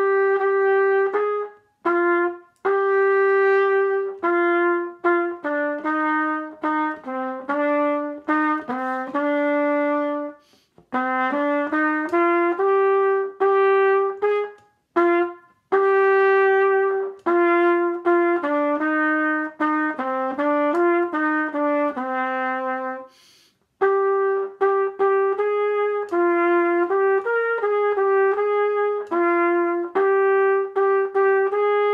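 Unaccompanied trumpet playing a Russian folk song melody, a mix of short notes and longer held ones, with brief pauses between phrases about two, ten, fifteen and twenty-three seconds in.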